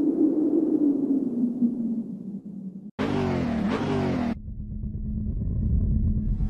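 Sound-design effects of an animated car intro: a low rumble with a hum that fades over the first three seconds. It cuts off suddenly, then comes about a second of a loud burst with sliding pitches like a car engine revving, and a low steady drone after it.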